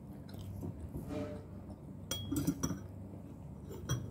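A person chewing a mouthful of noodle soup, then a metal spoon clinking several times against a ceramic bowl about two seconds in, with another clink near the end.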